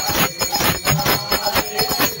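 Kirtan percussion: hand cymbals and jingling bells struck in a fast, even rhythm, about five or six strokes a second, with a steady metallic ringing over it.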